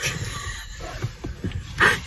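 A woman laughing softly and breathily, without words.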